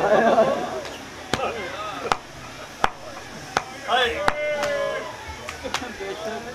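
A run of sharp slaps at an even beat, about one every three-quarters of a second, with a voice calling out briefly a little past the middle.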